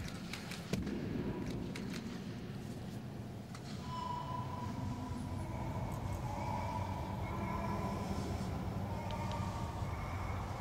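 Sparse soundtrack of a dance film: a steady low rumble with a few sharp knocks in the first seconds, then from about four seconds in, long held high tones over the rumble.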